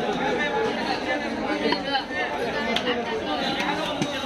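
Chatter of several people talking, with a few sharp knife chops on a wooden chopping block.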